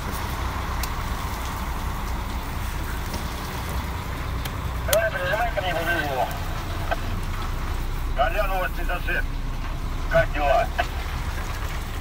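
Semi-truck's engine running low and steady, heard inside the cab as the truck rolls slowly, with a voice speaking briefly three times, about five, eight and ten seconds in.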